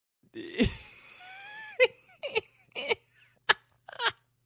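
A person's voice making non-speech sounds: after a low thump, a drawn-out sound that bends in pitch, then short breathy bursts about every half second.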